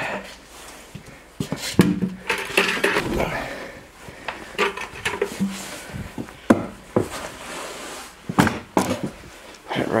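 A plastic sap bucket and its wire handle being carried and handled in a small room, with footsteps and a series of sharp clicks and knocks.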